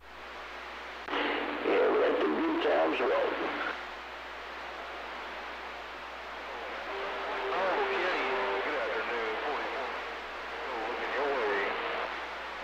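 CB radio speaker carrying a weak incoming transmission: a distant station's voice deep in static, in two stretches, hardly readable.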